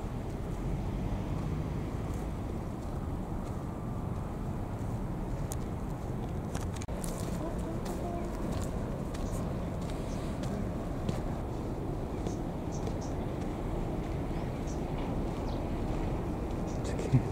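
Outdoor background noise: a steady low rumble with faint, short, high ticks scattered through it.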